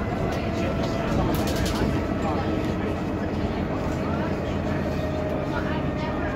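Inside a Bristol RELL6G single-deck bus on the move: its Gardner six-cylinder diesel runs steadily under a constant low rumble of engine and road noise in the saloon, with a faint steady whine over it.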